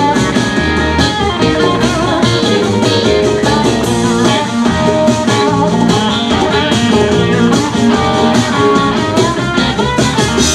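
Live rock band playing an instrumental passage: electric guitars over a drum kit and keyboards.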